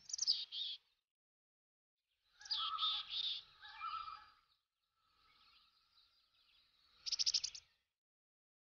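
Short bursts of bird chirping: a brief chirp at the start, a longer run of chirps from about two and a half to four seconds in, and a quick trill near the end.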